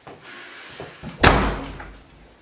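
A door slammed shut about a second in: one sharp loud slam with a low thud that dies away over about half a second, after a brief softer rustle of movement.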